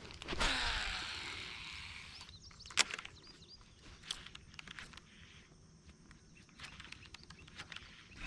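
A frog lure is cast on a baitcasting rod: the reel's spool whirs as line pays out, fading over about two seconds. A single sharp click follows near the three-second mark, then faint scattered ticks.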